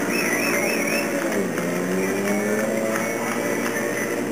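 Motorcycle engines running at low speed, one dropping in pitch and then slowly rising about a second in, mixed with music, including a high warbling tone in the first second.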